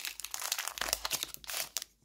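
Foil wrapper of a Pokémon booster pack being torn open and crinkled by hand, a rapid run of crackles.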